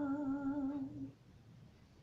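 A woman's unaccompanied voice holds a long, steady sung note, the last of a hymn, and it stops about a second in.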